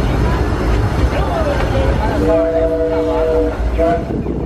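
Steam train's chime whistle blowing one long chord blast, then a short one, over the steady rumble of the train running on the track.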